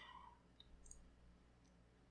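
Near silence with a couple of faint computer mouse clicks, one at the start and another about a second in.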